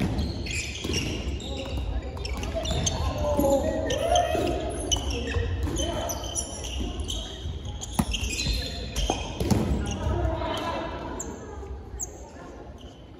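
Dodgeball being played on a wooden gym floor: the ball thuds as it is thrown, caught and bounces, while players call out to each other, all echoing in a large hall. One sharp smack stands out about eight seconds in.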